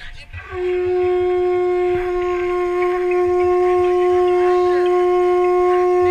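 Queen conch shell blown as a horn, sounding one long, steady note with a clear pitch. It starts about half a second in and holds unbroken: a beginner's first sustained note after being coached on buzzing the lips.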